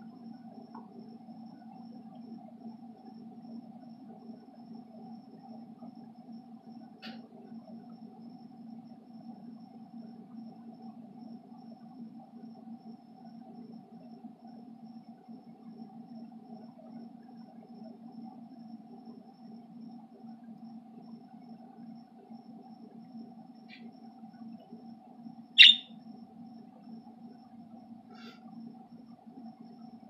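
Budgerigar giving a few brief, sparse chirps, one of them loud and sharp about three-quarters of the way through, over a steady low hum.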